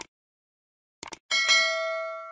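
Subscribe-button animation sound effects: a mouse click, a quick double click about a second in, then a bright bell ding that rings on and slowly fades.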